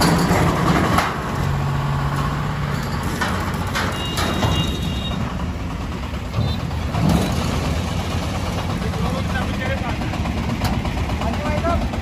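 Engine of a Mahindra Alfa Plus three-wheeler load carrier running steadily as it is driven slowly down the car-carrier deck and off the ramp.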